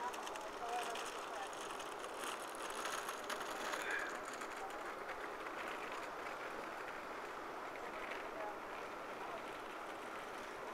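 Outdoor promenade ambience: indistinct chatter of passers-by over a steady background hiss, with a few faint scattered ticks.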